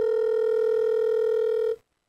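Telephone ringback tone of an outgoing call: one long, steady beep that cuts off suddenly shortly before the end, ringing the called phone before it is answered.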